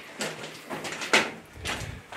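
Faint scuffing and a few short knocks of people moving through a timber-lined mine tunnel, the loudest a little over a second in.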